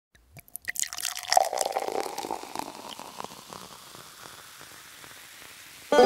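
Liquid pouring, with a crackle of many small clicks that thickens about a second in, then thins out and fades.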